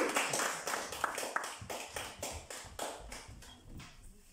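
Small audience applauding, the claps thinning out and fading away.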